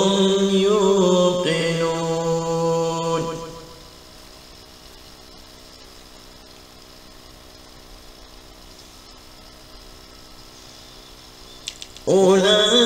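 A male reciter chanting the close of a Quranic verse in a melodic style, with long held, ornamented notes. The voice stops about three and a half seconds in, leaving only a faint steady hum until the next verse begins at the very end.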